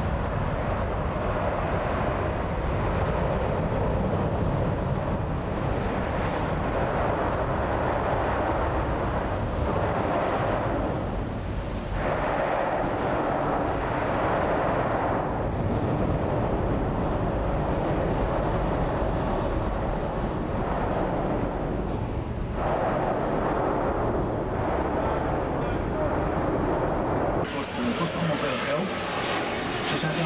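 Steady, loud rumbling rush of a cruise boat under way on a canal. In the last few seconds the sound changes to a jet airliner passing overhead.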